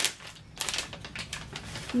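Soft plastic wrapper of a facial-wipes pack crinkling in short, irregular crackles as it is handled and opened to pull out a wipe.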